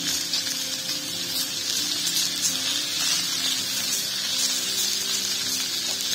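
Sausages sizzling on a hot stainless-steel barbecue hotplate, a steady hiss.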